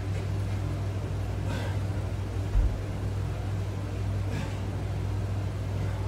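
Window air conditioner running with a steady low hum. Two faint short exhales come from the man working the resistance bands, and a soft low thump sounds about halfway through.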